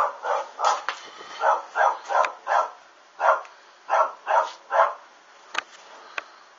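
A dog barking repeatedly, about a dozen short barks in quick runs, stopping about five seconds in. A sharp click near the end.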